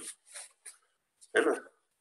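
A man's voice says one short word in a pause in his talk, with a few faint small sounds around it.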